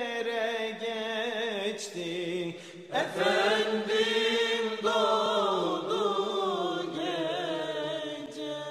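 Sung religious chant: long held, wavering vocal notes. The singing breaks off briefly just before three seconds in and comes back louder.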